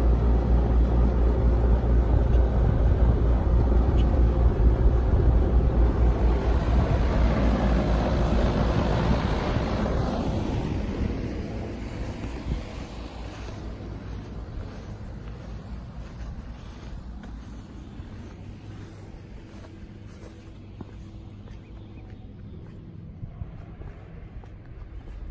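Outdoor packaged air-conditioning unit (model Q7RD-024K) running with a steady low hum and fan air noise. The sound fades after about ten seconds as it grows more distant.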